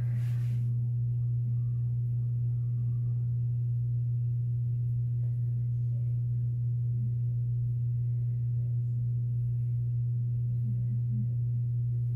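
A steady low hum, with a brief soft hiss at the start.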